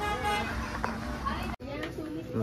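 A vehicle horn sounds briefly at the start over street traffic noise, then the sound drops out abruptly for an instant just past midway.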